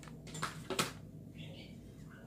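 Light handling sounds of craft work on a tabletop: two small clicks a little under a second apart, then faint rustling as a felt flower is pressed into place.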